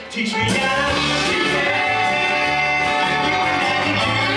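Live band playing an up-tempo rock and roll number, with singing. After a brief break at the very start, the full band comes back in about half a second in with a steady bass rhythm.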